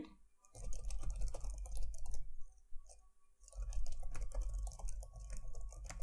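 Typing on a computer keyboard: two quick runs of keystrokes with a short pause between them, as a line of code is typed out.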